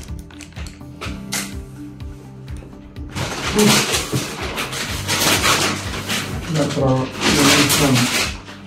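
Soft background music with held notes, then, from about three seconds in, loud rustling of grocery shopping bags as items are rummaged out, with a brief voice near the end.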